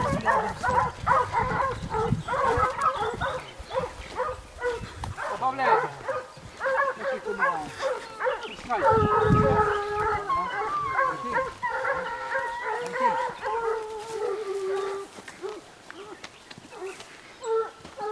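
A pack of hunting hounds baying in thick brush, several voices overlapping, as they give tongue on a scent. The calling thins out and fades about fifteen seconds in, with one short call just before the end.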